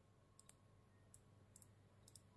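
Near silence with a few very faint clicks from a smartwatch's crown being turned to scroll through menus.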